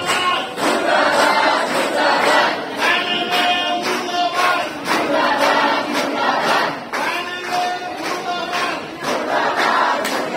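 A crowd of protesters chanting slogans in unison, in a steady repeating rhythm.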